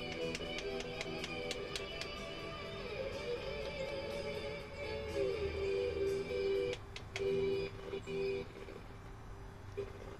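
Streamed music played through car speakers from a Harman Kardon receiver, which is acting up with only one speaker working. The sound drops out briefly twice in the second half, then carries on quieter.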